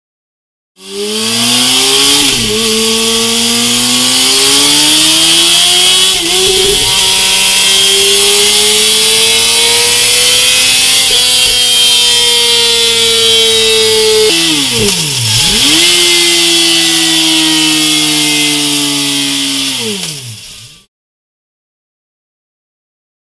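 Yamaha YZF-R6 inline-four engine through a Mivv Double Gun aftermarket exhaust, running at high revs. Its pitch climbs slowly and then eases off, with a quick drop and recovery about two seconds in and a deep drop and sharp climb back around fifteen seconds. It cuts off abruptly about a second before the end.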